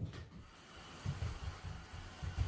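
Soft low thumps and faint rustling over a steady hiss, from a person moving close to the microphone while handling a board book.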